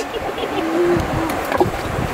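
Steady rushing noise of shallow stream water running over rocks, mixed with wind on the microphone, with a few light clicks.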